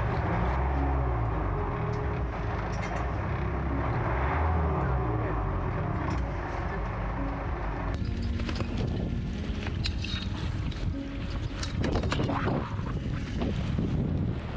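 Wind and water noise on a sailboat under way, with rumbling wind on the microphone. In the second half come many short clicks and knocks from handling a boat pole and a heavy line at the bow.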